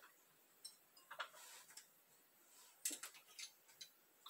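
Faint, scattered clicks and taps of a small brown glass bottle and a silicone funnel being handled and set down, with the loudest tap about three seconds in.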